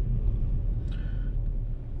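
Steady low rumble of a moving car's engine and tyres, heard from inside the cabin.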